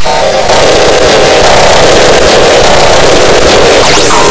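Loud, harsh distorted audio: a dense noise with a steady buzzing cluster of mid-pitched tones and a quick pitch sweep near the end, typical of a heavily effects-processed cartoon soundtrack.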